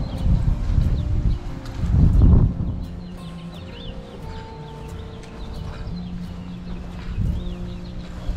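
Birds chirping repeatedly from about three seconds in, over a steady low hum, with two loud low rumbles in the first few seconds.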